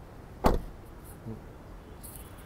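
A car door on a 2021 Toyota Fortuner being shut: one short, loud thud about half a second in.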